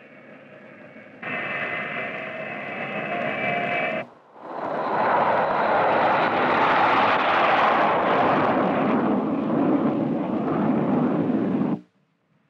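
Steady jet-engine whine with a few held tones, stepping up in level about a second in; then, after a brief dip, the loud even roar of a Convair B-58 Hustler's four General Electric J79 turbojets on the takeoff roll, cutting off abruptly just before the end.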